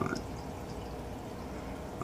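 Steady trickling and bubbling of water from a running aquarium filter.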